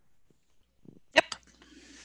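Near-quiet pause on a video call, broken about a second in by a brief, clipped "yep" from a second participant's microphone, followed by faint microphone hiss.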